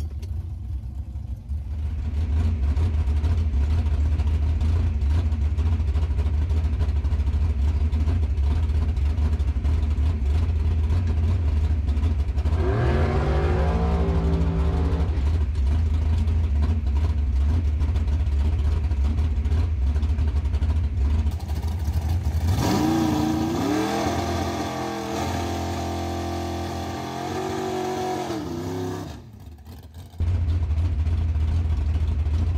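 Drag-racing Camaro's engine running with a loud, steady low rumble, heard from inside the car. About halfway through a pitched engine note rises briefly. From about three-quarters through the low rumble eases and a higher engine note rises and falls until a short drop near the end.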